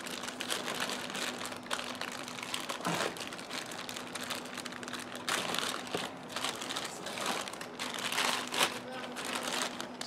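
Sealed clear plastic bag crinkling and crackling as a gloved hand opens it and works a part out of it, in irregular bursts.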